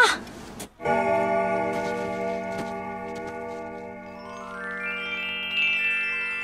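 An electronic keyboard chord is held steadily for about five seconds, starting just under a second in, with a higher note gliding upward near the end.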